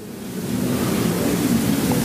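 Seated lecture-hall audience talking quietly among themselves, a steady hiss of many low voices that swells over the first second.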